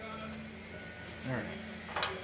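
A man's voice, faint and without clear words, over a steady low hum, with a sharp click near the end.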